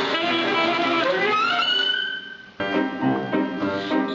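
Saxophone and piano playing; the phrase ends on a held note about two seconds in. After a brief drop in level, different music begins.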